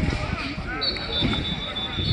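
Football practice field sounds: distant players' and coaches' voices talking, with a few scattered low thuds and a faint high steady tone that comes and goes.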